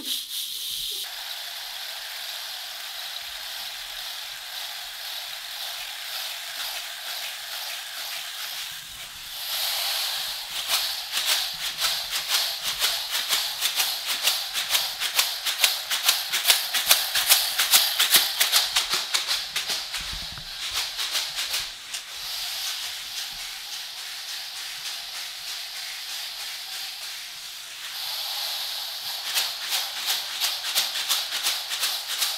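Wooden rain stick being tilted, its fill trickling through in a continuous rattling rush. About nine seconds in the flow grows louder and denser with many fine clicks, peaking midway before settling back to a softer trickle, then it swells again near the end.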